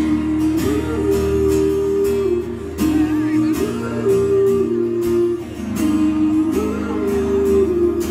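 Live pop-rock band playing: acoustic guitars strumming under long held melody notes, with no lyrics sung.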